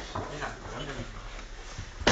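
A small dog whining softly, with a few short, wavering whimpers.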